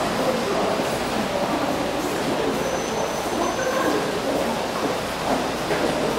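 Ambience of a busy underground pedestrian passage: a steady, echoing rumble with indistinct voices of passers-by.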